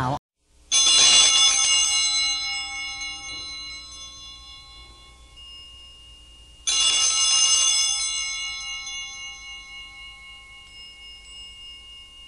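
A small metal hand bell rung twice, about six seconds apart, each ring dying away slowly.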